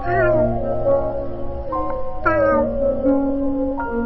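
Background music with cat meows set into it: two falling meows, one right at the start and one about two seconds later.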